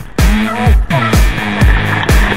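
Background dance music with a steady beat, about two bass thumps a second, with a brief drop-out at the start.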